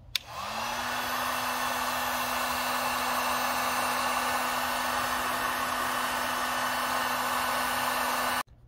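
Handheld electric heat gun switched on with a click. Its motor spins up with a short rising whine, then runs at one steady pitch under a steady rush of air, blowing on a car emblem to soften the badge adhesive.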